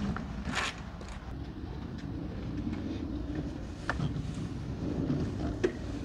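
Steady low background rumble with a few brief rustles and soft knocks, one shortly after the start, one about four seconds in and one near the end.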